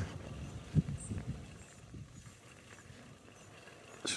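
Faint low wind rumble with a few soft thumps about a second in, fading to a quiet hiss.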